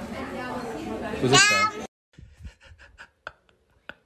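A person's voice breaking into a short, high-pitched squeal of laughter that rises and falls, then cuts off abruptly. After it come only faint scattered clicks.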